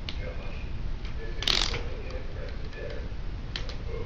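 Plastic clicking and ratcheting of a LEGO toy fire truck's ladder as it is pulled up and its sections slid out, with a louder rattle about a second and a half in.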